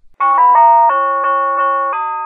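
Short doorbell-like chime jingle: a string of clear ringing notes starting about a fifth of a second in, quick at first, then slower and evenly spaced.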